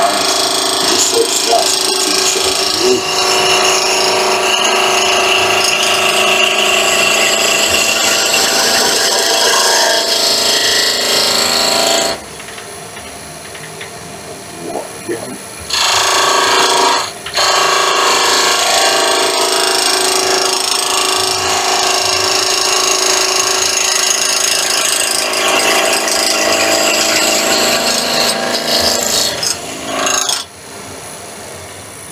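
Spindle gouge cutting a spinning pine spindle on a wood lathe, riding the bevel on the rough wood: a loud, continuous shaving noise in passes. Around the middle the cut stops for about three seconds, leaving only the quieter running of the lathe, then the cut resumes and carries on until just before the end.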